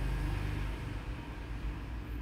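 A steady low background rumble under a faint even hiss, with no distinct strokes or knocks.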